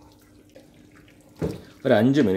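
Faint cooking sounds of chicken in masala being stirred with a spatula in an aluminium pressure-cooker pot, then a voice starts speaking near the end.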